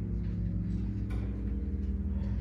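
A pause in speech filled by a steady low hum, with a few faint ticks.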